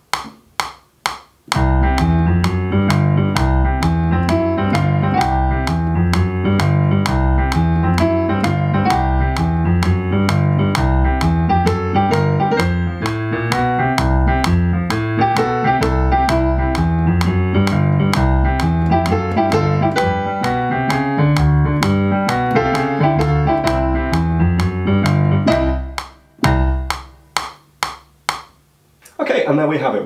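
Yamaha CP33 stage piano playing a short piece in strict time to a steady metronome click from the recording software. The click counts in alone for about a second and a half before the piano starts, and runs on alone for a few seconds after the piano stops near the end.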